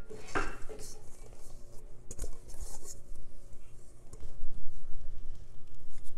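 Silicone bowl scraper scraping bread dough off the sides of a stainless steel mixing bowl, with short scrapes and light knocks against the metal that grow busier and louder in the second half.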